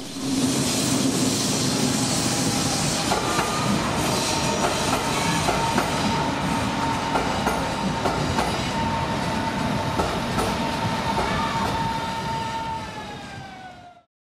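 Berlin S-Bahn electric train running past close by, its wheels clicking over the rail joints under a steady whine. Near the end the whine drops in pitch as the sound fades away.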